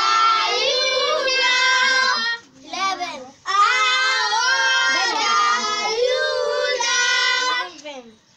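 Children singing a birthday song together, in long held notes, with a short break about two and a half seconds in and another near the end.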